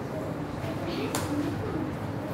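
Marker pen writing on a whiteboard, with one sharp stroke about a second in, over a steady murmur of background voices.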